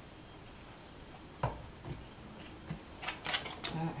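A deck of tarot cards being picked up and handled on a table: one sharp knock about a second and a half in, then a run of quick clicks and rustles as the cards are gathered.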